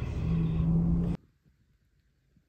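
A steady low hum over a rushing noise, which cuts off abruptly about a second in.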